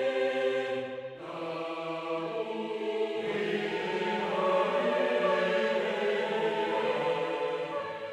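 Virtual choir from the EastWest Hollywood Choirs sample library singing sustained chords of a newly composed choral anthem. The harmony shifts about a second in and again about three seconds in.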